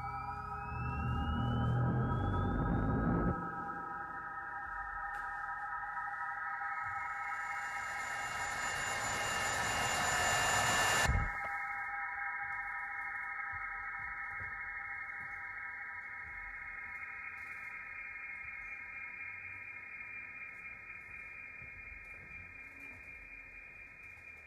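Electroacoustic music: several steady high tones held like a drone by electric strings and electronics, with rising gliding tones fading out at the start. A low rumbling noise cuts off abruptly about three seconds in, and a hissing swell builds and stops suddenly about eleven seconds in; the held tones then slowly fade.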